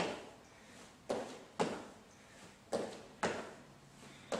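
Sneakers striking a hardwood floor during repeated sumo squat jumps: two sharp impacts about half a second apart, then the same pair again about a second and a half later.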